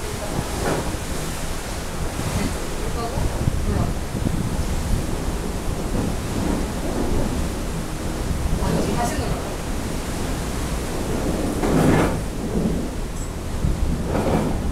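Wind buffeting the microphone on an open ship's deck at sea: a steady low rumbling noise, with faint voices now and then.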